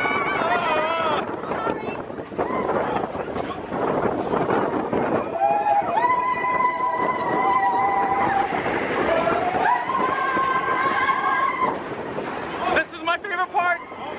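On board a Big Thunder Mountain Railroad mine-train roller coaster: steady wind and track rumble as the train runs. Riders let out long held whoops, one about six seconds in and another near ten seconds.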